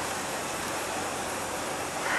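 Steady rushing background noise, even throughout, with no distinct event.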